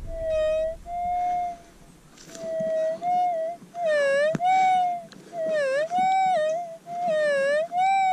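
Minelab GPX 4500 pulse-induction metal detector's audio: an electronic tone, broken by short gaps, whose pitch dips and wavers several times as the coil sweeps over the hole. It is a faint low-tone 'whisper' signal from a deep target still in the ground.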